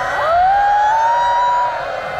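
Electronic game-show tension sound effect: a clean siren-like tone glides upward and holds for about a second and a half over a few fading downward-sliding tones, then cuts off near the end.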